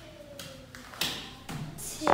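A bare foot stepping onto a thin plastic game mat: one sudden tap and crinkle about a second in, with fainter rustles of the mat near the end.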